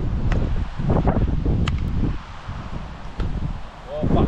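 Wind buffeting the microphone, with three sharp slaps of hands striking a beach volleyball, spaced about a second and a half apart as a rally gets going.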